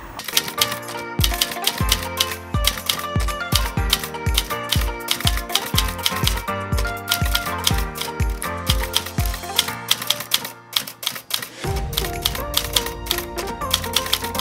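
Background music with a steady thumping beat, overlaid with rapid typewriter-key clicks of a typing sound effect. The beat drops out for about two seconds late on and then comes back fuller.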